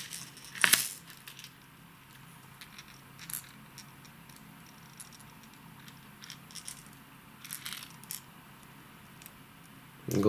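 Hard plastic fishing wobblers and their treble hooks clicking and rattling as they are handled, with one sharper click about a second in and a few lighter ones later.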